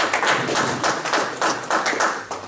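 Small audience applauding, the claps heard as a dense run of quick separate strikes.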